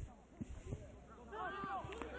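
Faint shouts and calls of footballers on the pitch, heard from a distance, with a few soft knocks in the first second.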